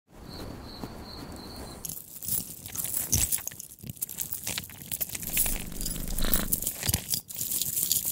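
Close-up ASMR crackling and crunching sound effects, a dense run of sharp clicks and crinkles standing for earrings being worked out of an ear. For about the first two seconds there is only a soft hiss with a faint pulsing high tone, then the crackling starts abruptly and carries on.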